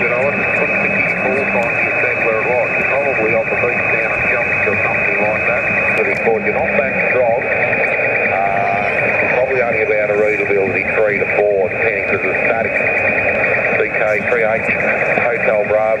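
Single-sideband voice from a distant amateur station coming through a Yaesu HF transceiver's speaker on the 80 m band, over steady band noise and hiss. The audio is narrow and thin, cut off sharply above about 2.7 kHz.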